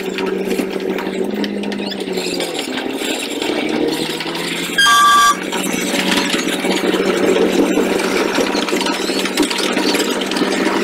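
A steady engine-like hum that shifts in pitch a few seconds in, over a busy background din. About five seconds in, a short loud beep or horn blast.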